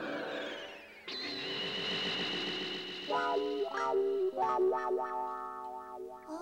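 Electronic synthesizer music as a time-travel sound effect. Falling, sweeping tones fade out over the first second, then a new passage starts suddenly with a high held tone. From about three seconds in comes a run of short stepped notes.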